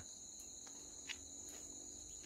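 Faint, steady high-pitched insect chorus, two held shrill tones running on without a break, with a soft tick about a second in.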